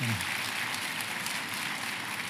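A pause in a man's speech: the last bit of a word at the very start, then only a steady hiss of background noise.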